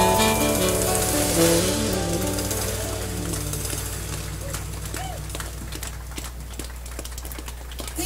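A bossa nova jazz band with guitar, electric bass and saxophone playing the closing notes of a song, the notes dying away over the first three seconds or so above a steady low hum. A few scattered sharp clicks follow in the fading tail.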